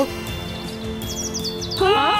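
Background music of an animated cartoon with steady held notes. About halfway through, a quick run of high chirping notes steps downward, and a rising tone sweeps up just before the end.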